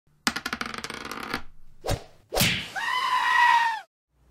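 Intro sound effects for the title card. A fast run of crackling clicks comes first, then a single smack, then a second hit that runs into a held, pitched tone. The tone dips in pitch and cuts off just before the end.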